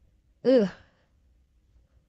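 A woman's short exclamation, "ooh", about half a second in, its pitch rising and then falling; otherwise quiet room tone.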